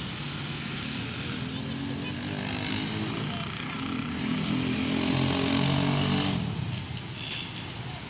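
A motor vehicle's engine running with a steady hum, growing louder until about six seconds in, then dropping away suddenly.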